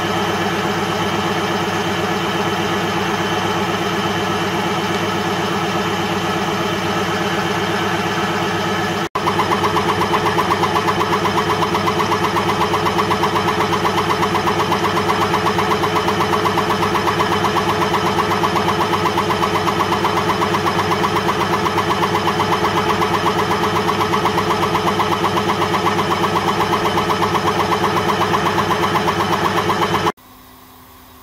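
Piston air compressor running steadily with a fast, even pulsing beat. It breaks off for a moment about nine seconds in, then carries on a little louder.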